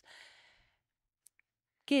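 A short breath into a stage microphone, fading out within about half a second, then a pause of near silence with one faint click. A woman's voice starts speaking near the end.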